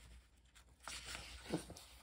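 Faint rustle of paper as the pages of a comic book are flipped and turned, starting about a second in.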